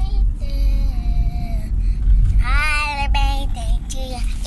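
A young child's high-pitched singing voice: one held note early on, then a higher, wavering note just past the middle. Under it runs the steady low rumble of road noise inside a moving car.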